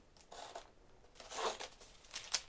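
Hobby knife slitting packing tape on a cardboard box: two short scraping cuts, about half a second in and again about a second and a half in.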